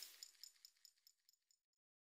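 Near silence: the faint fading tail of a title-card transition effect, with a quick run of soft high tinkling ticks that die away over about a second and a half, then dead silence.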